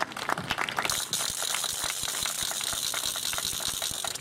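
Crowd applauding: scattered claps at first, filling out into steady, dense applause about a second in.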